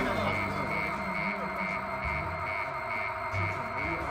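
Security checkpoint alarm beeping fast and steadily, a high tone about three times a second, set off as the man is stopped and searched by guards. Film score music runs beneath it.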